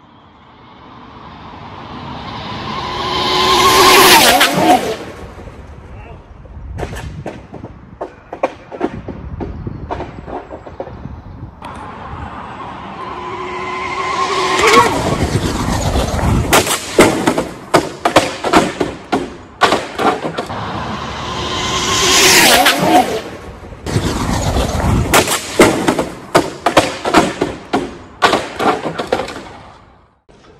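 Dual-motor Arrma speed-run RC car speeding past twice, its brushless motor and drivetrain whine climbing as it approaches and bending down in pitch as it passes. The first pass peaks about four seconds in and the second about 22 seconds in. Through the second half come many sharp knocks and crackles.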